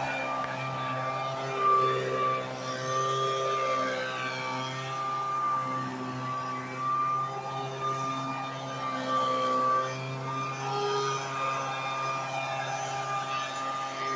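Handheld gas leaf blower running at a steady high speed, its small engine holding one even pitch as it blows grass clippings along a sidewalk.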